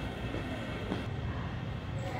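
Steady low rumble of a large indoor hall's background noise, with a faint click about a second in.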